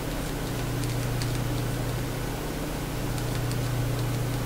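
Steady low electrical hum and hiss of room noise, with a few faint soft dabs from a paintbrush mixing acrylic paint on a palette.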